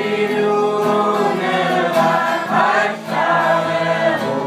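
A group of voices singing a song together in held notes.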